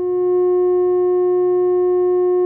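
Steady electronic sine tone at 360 cycles per second, an F sharp. It rises to full level within the first half second and then holds a single unchanging pitch.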